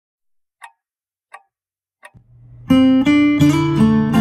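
Three short, evenly spaced ticks, a count-in, then a steel-string acoustic guitar comes in: a low note swells up and then full fingerpicked chords ring out.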